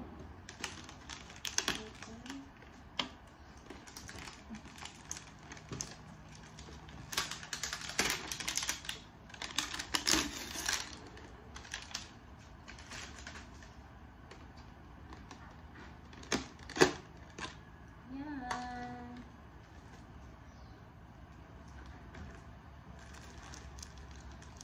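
Clear plastic packaging crinkling and crackling as it is handled and opened, an irregular run of sharp clicks, with one much louder snap about two-thirds of the way through.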